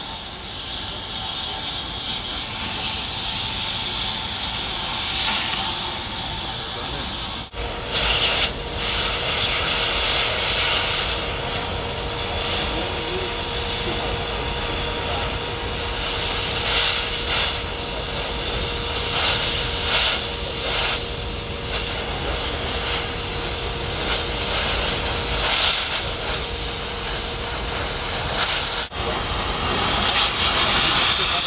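Oxy-fuel cutting torch running with a steady hiss as it cuts through structural steel, with brief breaks about seven seconds in and near the end.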